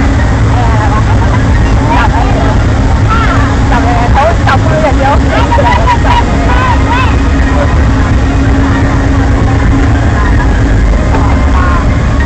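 Log flume boat being hauled up the chain lift hill: a loud, steady low rumble with a constant hum from the lift mechanism. Riders' voices come in over it from about three to seven seconds in.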